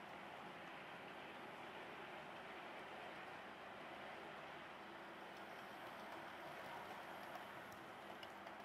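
Faint, steady running noise of a Hornby Class 60 OO gauge model locomotive, its central can motor and wheels on the track, hauling a rake of intermodal container wagons.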